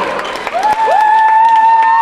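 A long yell that slides up about half a second in and is then held on one pitch, over a faint crowd hubbub.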